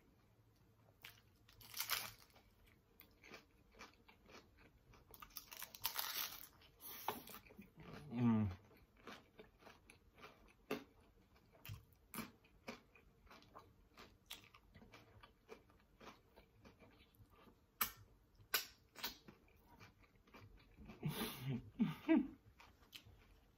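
Close-miked eating of homemade chips and a sandwich: a steady run of sharp crunches and wet chewing, with louder crunching spells, and a short falling hum about eight seconds in.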